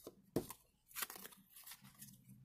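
Panini Adrenalyn XL trading cards being handled and laid down one at a time while being counted. There are brief, soft papery rustles and flicks: one about half a second in, another about a second in, and a fainter one near the end.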